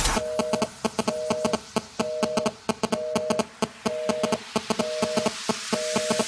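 Electronic dance music in a breakdown: the bass and kick drop out, leaving a short two-note synth figure repeating about once a second over crisp clicking percussion. A rising sweep builds near the end.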